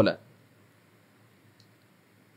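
A man's word trailing off, then quiet room tone with a faint small click or two about one and a half seconds in.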